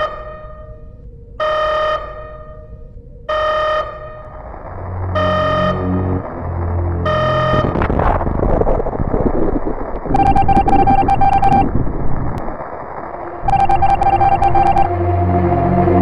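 Electronic sound effects: a pitched beep repeating about every two seconds, five times. Then a low synthesized drone swells up with rushing noise, and buzzy electronic tones sound twice over it near the end.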